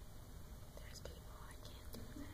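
Faint whispering with a few soft clicks over a low, steady room rumble.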